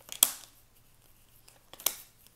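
Tarot cards being dealt one at a time onto a hard tabletop: two sharp card snaps, one just after the start and one near the end, with faint rustling between.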